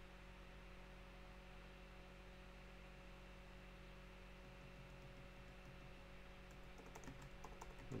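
Near silence with a faint steady hum, then a quick run of computer keyboard keystrokes starting a little before the end.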